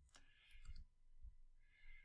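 Faint clicks from a computer keyboard and mouse, a few scattered strokes over low room tone.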